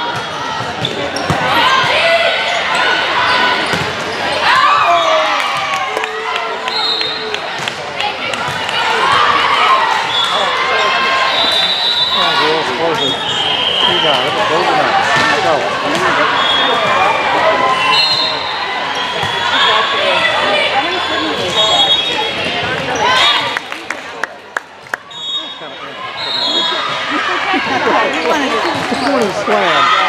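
Indoor volleyball play in a large, echoing gym: sharp ball hits, brief high squeaks and players' voices calling out over one another, thinning out to a few scattered hits for a couple of seconds late on.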